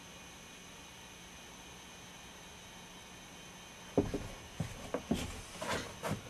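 Faint steady hiss and hum of room tone, then about four seconds in a run of irregular knocks and clicks from handling.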